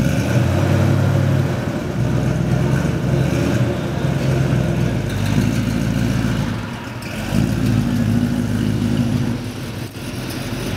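Ford Mustang station wagon's engine running at idle in a rumble, its revs rising and falling in several short throttle blips.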